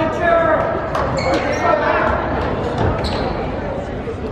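Indistinct voices from players and spectators in a gymnasium, with a basketball bouncing on the hardwood court and short sharp knocks among them.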